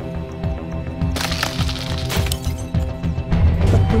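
Film soundtrack music playing steadily, with a burst of sharp cracking noise about a second in and another sharp crack about a second later.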